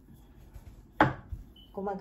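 A single sharp wooden knock about a second in, as a wooden rolling pin comes down on a wooden board. A woman's voice starts near the end.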